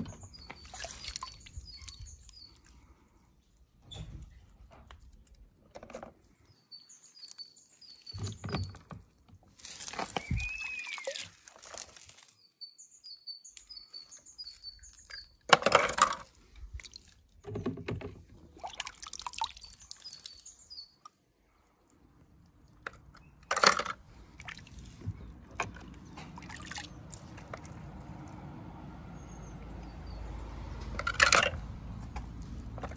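Water sloshing and splashing in a plastic tub as a hand rummages in it, in irregular bursts, the loudest a little past halfway. Small birds chirp in quick runs of short high notes in the background.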